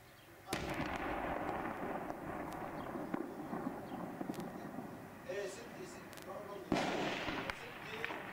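Two heavy explosions, the first about half a second in and the second near the end. Each starts suddenly and is followed by a long, rough rumble that slowly fades. These are shell blasts in a town under attack.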